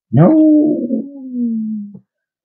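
A person's voice crying a long, drawn-out "Nooo!", held for nearly two seconds and falling slowly in pitch: a groan of disappointment.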